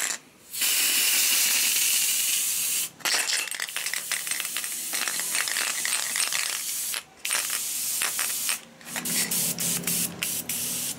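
Aerosol spray can of black undercoat paint hissing in three long bursts, then short broken spurts near the end as the can runs empty.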